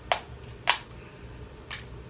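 Crab leg shells cracking by hand: three sharp snaps, the second the loudest.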